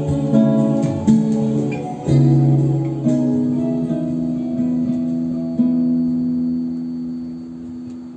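Solo classical guitar fingerpicked, a run of plucked notes and chords closing the piece, ending on a chord struck about five and a half seconds in that rings and slowly fades.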